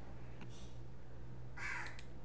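Quiet room tone with a steady low hum, a faint click about half a second in, and a short harsh burst of sound near the end.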